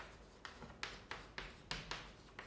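Chalk writing on a blackboard: a quick run of short scratching, tapping strokes, about three a second, as letters are written.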